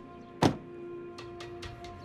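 A car door shutting with a single loud thunk about half a second in, over background music.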